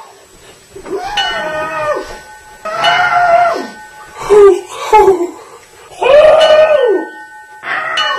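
A young man's voice making mock dinosaur noises, several drawn-out screeching cries and a couple of short ones, with ice cubes in his mouth. Steady electronic tones sound under some of the cries.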